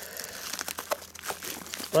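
Plastic shrink wrap on a vinyl record set crinkling under the fingers, a run of small irregular crackles as the wrapped set is handled.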